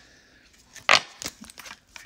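A deck of oracle cards being handled in the hands: one sharp snap of the cards about a second in, then a few lighter clicks.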